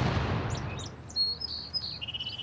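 The boom of a Civil War–era field cannon's shot dying away, then birds chirping with short high whistles from about half a second in.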